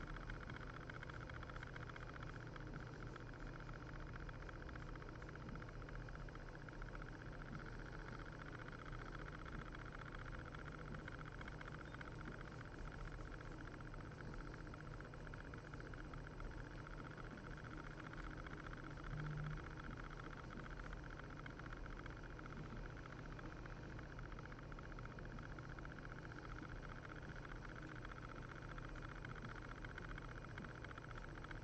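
Computer fan running steadily with a low hum, with a brief low bump about nineteen seconds in.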